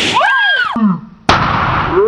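A rubber balloon bursting under a blow from a toy hammer, its crack right at the start, followed by a rising-and-falling cry. About a second and a quarter in comes a second sudden loud burst of noise that trails away.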